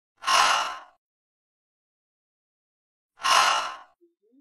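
A woman pronouncing the voiceless English /h/ sound on its own, twice: two breathy exhaled "hhh" sounds, each under a second, about three seconds apart.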